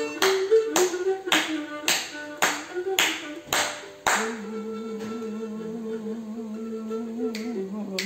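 Cretan lyra playing a melody over a sharp beat of strikes about twice a second. About halfway through the beat stops and the lyra holds one long, slightly wavering low note.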